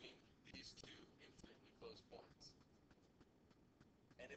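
Near silence with faint, whispered-sounding speech and a few light ticks of a stylus on a tablet as a line is drawn.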